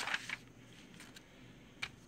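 Sheets of paper rustling briefly as they are slid across a table, then quiet handling, and a sharp click near the end as the metal-bolstered stiletto switchblade is set down on the paper.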